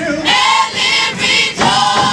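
Teen gospel choir singing live, many voices together in short, full-voiced phrases with brief breaks between them.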